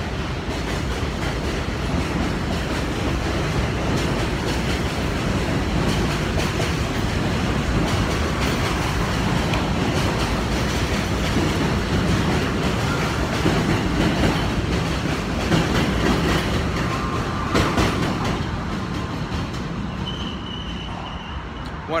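New York City subway train running past on a steel bridge close by: a steady loud rumble and clatter of wheels on the rails, with a brief high wheel squeal near the end as it eases off.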